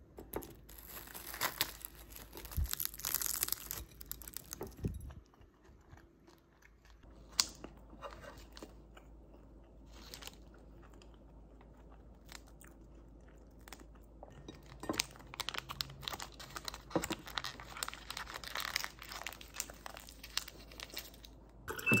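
Crusty bread roll being torn apart by hand and a foil-wrapped butter portion opened, crinkling, with fork clicks on a ceramic plate and chewing. At the very end a water dispenser beeps and starts to pour.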